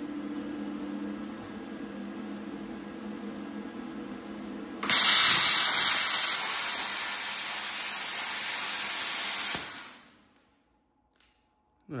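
A steady low hum, then about five seconds in a plasma cutter's arc fires with a loud, steady hiss as it cuts into steel. A little before ten seconds the hiss cuts off and dies away: the cutter has lost power, its 13 amp plug burnt out because it needs a heavier-duty supply.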